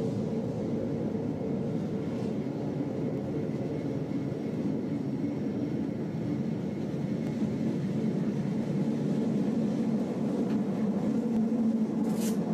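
Metre-gauge electric train running along the line, heard from the driver's cab: a steady rumble of wheels on rail and running gear that grows a little louder toward the end.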